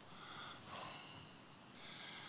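A man's faint breathing, a few soft breaths in and out, with no words.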